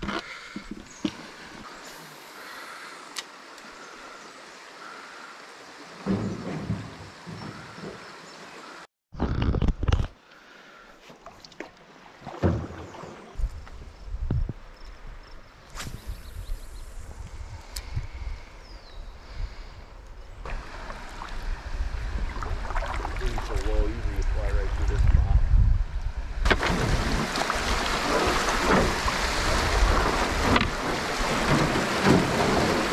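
Scattered knocks and rustles over quiet outdoor ambience, then a steady rush of water that builds up and is loud over the last few seconds as a canoe runs shallow rapids.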